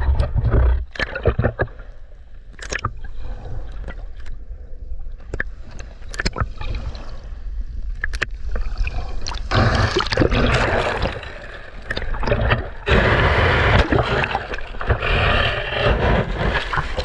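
Shallow sea water sloshing and gurgling around a half-submerged camera: muffled and low with scattered sharp clicks at first, then louder hissing rushes as small waves wash over it, about ten seconds in and again from about thirteen seconds.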